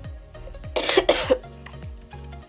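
A short cough about a second in, over background music whose deep bass notes repeatedly slide down in pitch.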